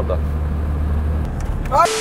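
VAZ 2107 sedan on the move: a low, steady drone of its four-cylinder engine and the road, which stops a little over a second in. A man's voice follows near the end.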